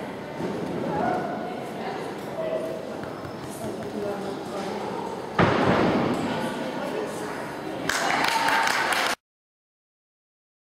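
Voices echoing in a large indoor hall during a dog agility run. About five seconds in, a sudden loud thud is followed by a rush of noise, and a second loud swell comes near the end before the sound cuts off abruptly just after nine seconds.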